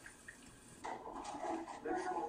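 Quiet room tone, then about a second in a man's voice says a drawn-out "oh" and goes on in low, indistinct talk, with a few faint clicks.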